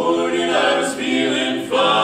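Male barbershop quartet singing a cappella in close four-part harmony, holding chords that change about a second in and again near the end.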